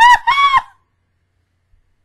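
A woman's high-pitched, squealing laughter in a few short bursts, ending under a second in.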